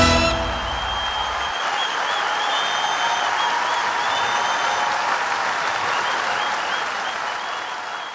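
A band's last chord cuts off in the first moment, then a large audience applauds and cheers, with a few high cries and whistles over the clapping. The applause fades slightly near the end.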